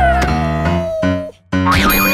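Short playful music jingle for an animated logo: bass notes stepping under a held, slowly falling tone. It breaks off briefly about one and a half seconds in, then starts again.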